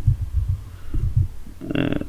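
Computer keyboard keystrokes heard as a few dull low thumps over a steady low hum.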